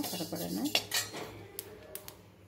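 A perforated steel ladle scraping and clinking against a stainless-steel kadai as seeds are stirred during roasting, with a couple of sharp clinks about a second in.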